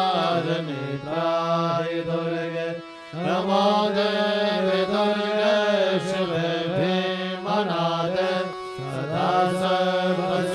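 Hindu devotional mantra chanting sung by voice in long, held, gliding notes, with a short break about three seconds in.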